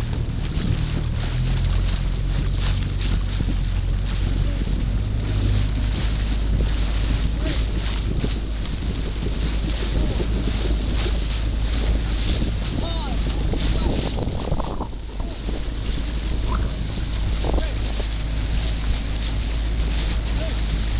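A small boat's outboard motor running steadily at low pitch, with wind buffeting the microphone and water rushing past the hull.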